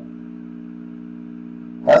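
A steady low hum made of several even tones, with no change through a pause in the speech; a man's voice starts again near the end.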